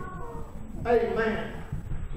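A man's raised, pitched preaching voice: a short drawn-out phrase at the start, then a longer one about a second in, with no clear words.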